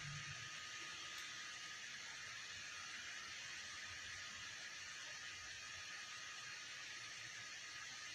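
Quiet, steady background hiss of room tone, with a faint steady high tone running under it.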